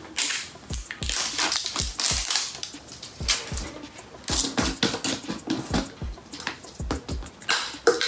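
Plastic protein-powder tub being handled and its screw-top lid twisted off, giving irregular plastic clicks, creaks and crackles.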